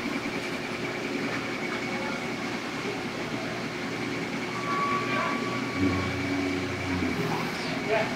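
Steady mechanical rumble of the old mill's turning works, with a faint hum joining in about six seconds in.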